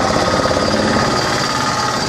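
A loud, steady mechanical rattle, like an engine running close by.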